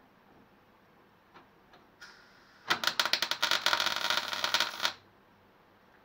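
MIG welder laying a tack weld on thin steel body panel: a faint hiss, then a dense crackling arc for about two seconds that stops abruptly.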